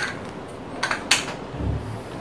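Small cardboard game tiles clicking as they are handled and set down on a wooden table: a click at the start and two more about a second in, then a soft low thump near the end.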